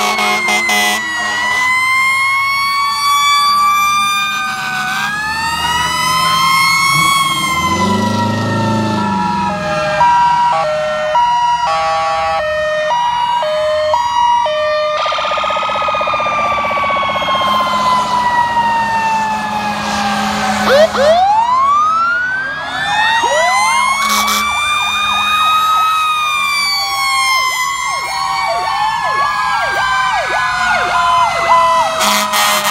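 Several emergency-vehicle sirens sounding at once from passing fire trucks and an ambulance: slow rising and falling wails overlap throughout. From about a third of the way in, a two-note hi-lo siren alternates for several seconds, and about two-thirds in, fast yelping sweeps take over.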